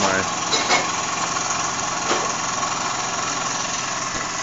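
Wilesco D10 model steam engine running steadily under steam pressure, its piston turning the flywheel and a small DC motor used as a generator. A few faint clicks sound over it.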